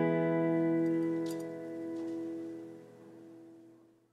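An acoustic guitar's last strummed chord ringing out and dying away, fading to silence near the end: the close of a folk-pop song.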